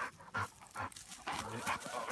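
A chocolate Labrador retriever panting, short quick breaths at about two or three a second.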